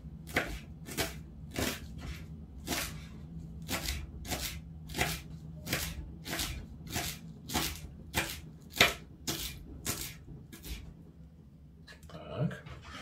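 Kitchen knife finely chopping dill on a wooden cutting board: a steady run of cuts, a little under two a second, stopping about a second before the end.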